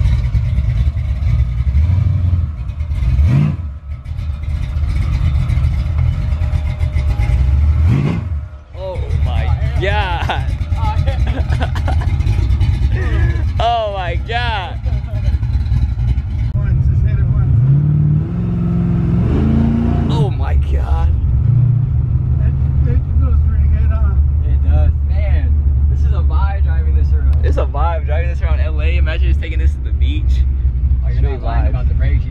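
Car engine with a valved performance exhaust pulling hard: a loud steady drone, sharp rises in revs about three and eight seconds in, and a climb in pitch through the gears around the middle. Voices and laughter come through over it.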